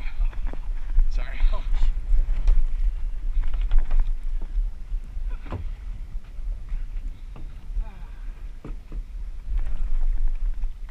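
Steady low rumble and water noise from a small fishing boat at sea, broken by scattered short knocks.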